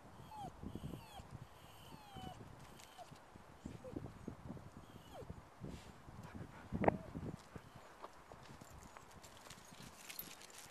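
Faint, indistinct human voices, with one louder short call about seven seconds in.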